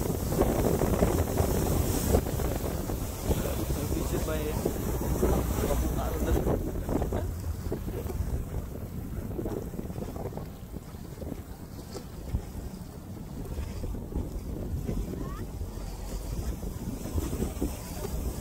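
Speedboat outboard motor running under tow load, with wind buffeting the microphone and the wake rushing. It eases off after the first several seconds as the boat slows.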